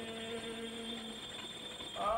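Liturgical chant in a man's voice: a held note ends about a second in, followed by a short pause with faint clicking over steady tape hiss before the chanting starts again.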